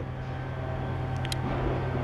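A steady low background hum, with one faint short click a little past the middle.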